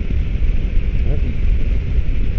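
Buell Ulysses V-twin motorcycle engine running steadily at road speed, with wind rushing over the microphone.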